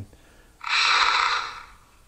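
A man's heavy sigh: one long breath out, lasting about a second.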